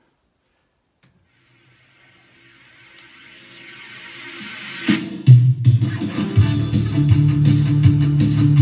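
A 1980s rock band recording starts up: a swell grows louder over about three seconds, then the full band with drums and bass comes in with a hit about five seconds in. An electric guitar, a Gibson Les Paul Classic gold top, plays along with it.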